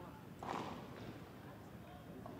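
Low background ambience of a padel court between points, with one short noisy burst about half a second in.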